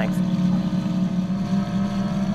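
Torqeedo Cruise 4.0 R electric outboard driving a pontoon boat under way: a steady low hum with faint, thin steady tones above it, over the wash of the propeller churning the water.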